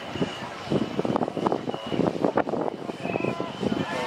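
Indistinct voices and shouts of a crowd, short overlapping calls starting about a second in and running on in uneven spurts.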